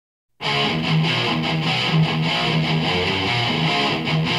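A heavy metal song opens with a distorted electric guitar riff that starts about half a second in.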